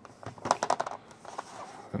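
Plastic latch flaps of a bento lunch box being handled and snapped: a quick run of light clicks and taps about half a second in, then a few scattered clicks.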